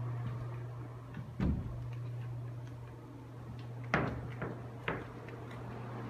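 A few short, sharp knocks and clicks, four in all, the loudest about four seconds in, over a steady low hum.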